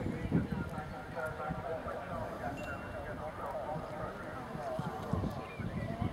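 A horse trotting on grass, its hooves giving a run of dull thuds, with people talking in the background.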